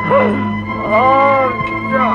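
Dramatic film score with a steady held drone, over two wailing, whimpering cries that rise and fall in pitch: a short one at the start and a longer one about a second in. The cries come from a beaten man groaning in pain.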